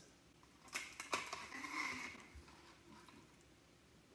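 A plastic straw pushed down through the lid of a foam drink cup: two light clicks, then a brief soft scrape as it slides in, then quiet.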